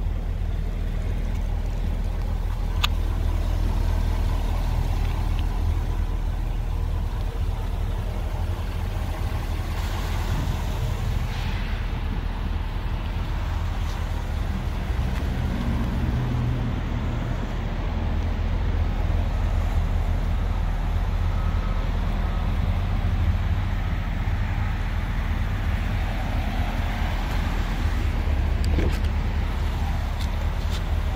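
A car engine idling steadily, a low even hum with no change in speed.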